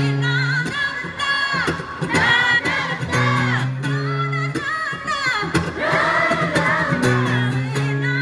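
Live concert music heard from the audience: a woman singing gliding, ornamented lines over acoustic guitar, with held low notes underneath.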